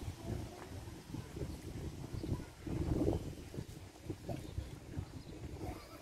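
Open-air crowd ambience: uneven wind rumble on the microphone with faint, indistinct murmur from people standing around, swelling briefly about halfway through.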